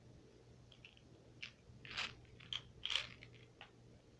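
Small jelly bean package being opened and handled to get a bean out: a run of irregular crinkles and clicks, loudest about two and three seconds in.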